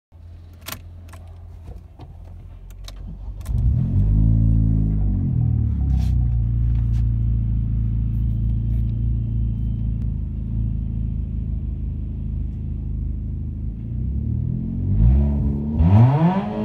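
A car engine started: a few sharp clicks, then it catches about three and a half seconds in, flares up briefly and settles into a steady idle. Near the end it begins to rev, rising in pitch.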